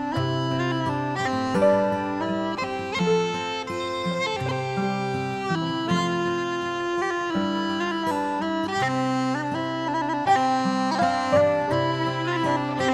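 Instrumental break of a slow Irish folk air: the melody is carried on uilleann pipes over sustained low notes and band accompaniment.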